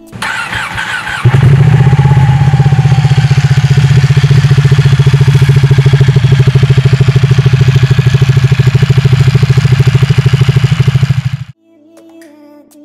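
Ducati Panigale's Superquadro V-twin starting to warm up the oil: about a second of cranking, then the engine catches and settles into a steady, fast-pulsing idle. It stops abruptly near the end.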